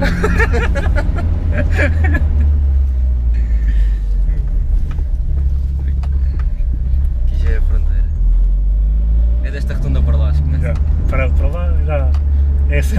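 Mitsubishi Lancer Evolution VIII's turbocharged four-cylinder engine and road noise droning steadily inside the cabin while driving, with laughter near the start and again near the end.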